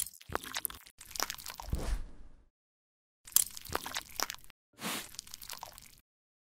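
Close-miked ASMR crunching and crackling sound effects standing in for tweezers plucking larvae from a wound. A sharp click at the start, then three bursts of crisp crackling of one to two and a half seconds each, with short silences between them.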